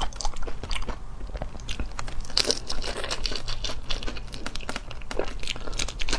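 Close-up crunching and chewing of a whole shell-on shrimp, its shell cracking between the teeth in a run of irregular crackles that are busiest about halfway through.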